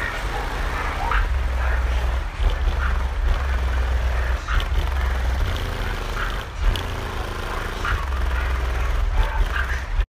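Car-audio subwoofers playing loud, deep bass notes, heard from outside the vehicle. The bass drops out briefly twice, about two and a half and six and a half seconds in, with crowd voices over it.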